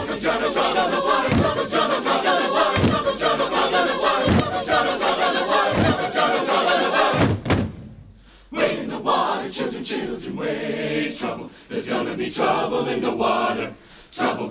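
A choir singing, with low thuds keeping a beat about every one and a half seconds. About seven and a half seconds in, the singing breaks off briefly, then resumes more softly.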